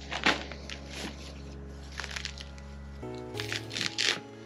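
Dry moss and damp soil substrate being scrunched and mixed by hand in a plastic bucket: scattered crackly rustles, louder near the start and toward the end. Quiet background music plays under it, its chord shifting about three seconds in.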